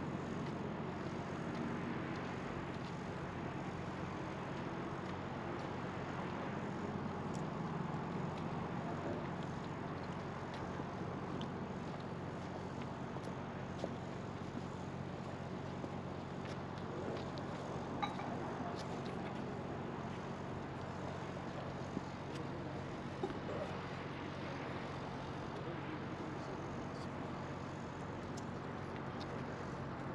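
Outdoor ambience of steady distant town traffic, with faint voices now and then and a few small clicks near the middle.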